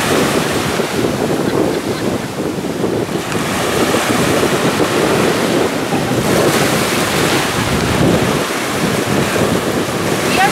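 Small waves breaking and washing up a sandy beach in the shallows, a continuous surf sound that gently swells and eases, with wind buffeting the microphone.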